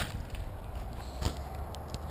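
Low rumble of wind and handling on a body-worn camera as the angler moves through dry grass, with one short knock a little past a second in and a few faint ticks near the end.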